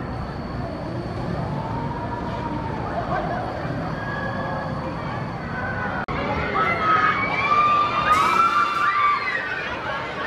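Riders screaming on a giant pendulum ride as it swings them high, over a background of crowd noise. The screams are faint at first, then much louder and overlapping after a sudden cut about six seconds in.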